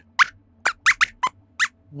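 About six short, high-pitched squeaks in quick succession, some gliding in pitch: the squeaky 'voice' of a robot rat puppet character answering a question.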